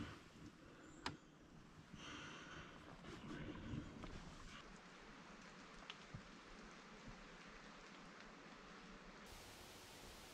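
Near silence: a faint, steady outdoor hiss with soft rustling in the first few seconds and one sharp click about a second in.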